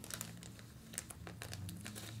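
Faint crinkling and scattered small clicks of a plastic snack packet being handled, over low room tone.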